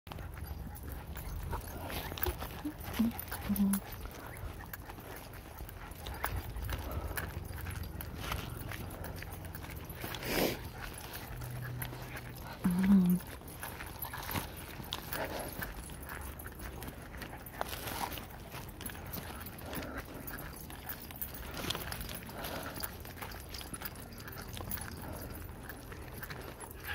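Footsteps and small dogs' paw steps on a dirt-and-gravel trail, with many small scattered clicks and a low handling rumble throughout. A person says a brief 'oh' near the start, and there is a short, louder low vocal sound about halfway through.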